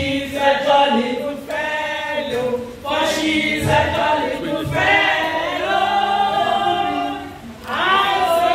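A group of voices singing a celebratory song together, led by a woman singing into a handheld microphone.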